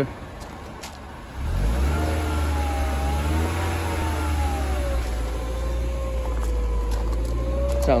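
Mercedes-Benz SLK230's supercharged 2.3-litre four-cylinder engine starting about a second and a half in, rising in pitch, then settling into a steady idle that sounds good.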